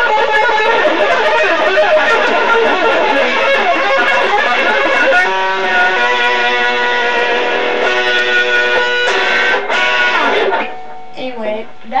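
Loud electric guitar music with a voice in it over the first few seconds. Held notes and chords ring from about five seconds in, then the music cuts off suddenly about ten and a half seconds in.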